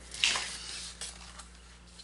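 A brief paper rustle just after the start, then a couple of faint soft handling sounds as a paper planner page is moved about.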